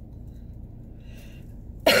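A low steady background hum inside a car, then near the end a woman coughs loudly once.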